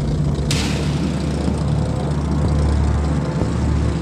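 Supermarine Spitfire's V12 piston engine running at low power as the aircraft taxis, a steady deep drone from engine and propeller. A steady hiss joins it about half a second in.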